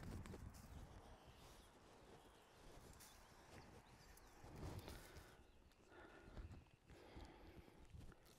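Near silence, with a few faint soft knocks.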